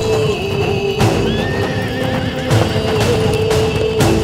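A horse neighing, with a wavering call from about one to two and a half seconds in, and a few thuds, over a held note of dramatic background music.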